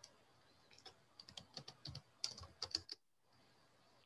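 Faint typing on a computer keyboard: an irregular run of about a dozen key clicks from about one second in to about three seconds in.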